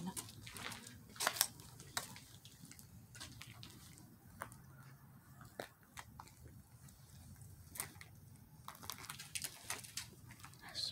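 Footsteps crunching now and then on dirt and debris over a concrete floor, a dozen irregular short crunches, over a faint steady low hum.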